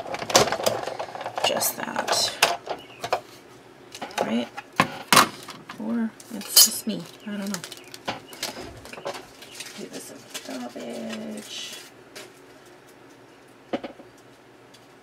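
Hand-cranked manual die-cutting machine and its cutting plates being handled: a scatter of sharp clicks and knocks as the plates are pulled out and set down and the die-cut paper is peeled off, growing quieter toward the end.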